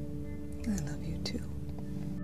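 Film trailer soundtrack: a steady, held music drone, with a soft whispered voice over it from about half a second in.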